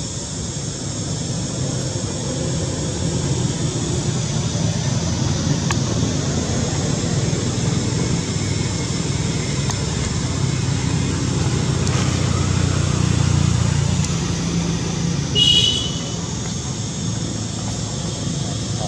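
Steady outdoor background rumble with a faint high hiss, swelling slightly about three-quarters of the way in. One brief high-pitched squeak comes near the end.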